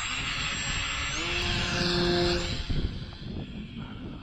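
Small electric RC plane's 1806 2300KV brushless motor and propeller running under power with air rushing past, a high whine that rises in pitch about a second in, then fades after about two and a half seconds.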